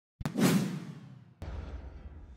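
A whoosh transition sound effect that comes in suddenly and fades away, followed about a second later by a second, quieter whoosh.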